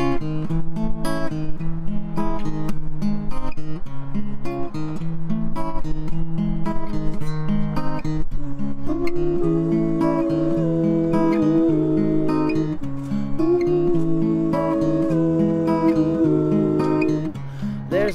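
Acoustic folk-pop band playing a song's instrumental intro: two strummed acoustic guitars with upright double bass and light drums in a steady repeating rhythm. About halfway in, a held melody line comes in over the accompaniment.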